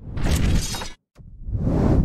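Video transition sound effect played with a logo animation: a sudden crash-like burst of noise lasting about a second, then after a short gap a second swell of noise that builds and cuts off.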